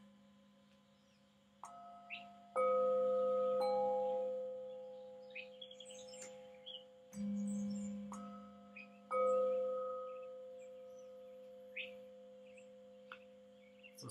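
Metal singing bowls struck one after another with a small mallet, about six strikes, each ringing on in a sustained tone and slowly fading; a lower-pitched bowl sounds about seven seconds in. Birds chirp faintly in the background.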